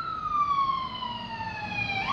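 An ambulance siren wailing: one long, slow fall in pitch, then a quick rise back up at the very end.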